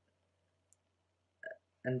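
A pause of near silence, broken by a faint tick and then a short mouth click just before a voice starts to speak near the end.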